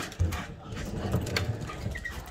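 Footsteps and light clicks on wooden floorboards as a person walks with dogs, over a low rumble of a phone being handled while carried.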